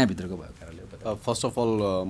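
A man speaking, ending on a drawn-out vowel.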